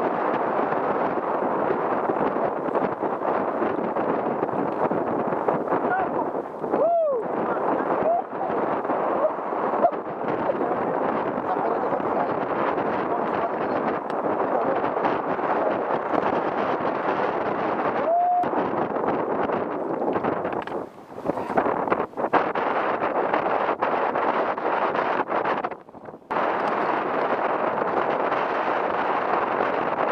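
Steady rushing of wind buffeting the microphone on an open boat at sea, dipping briefly twice about two-thirds of the way through.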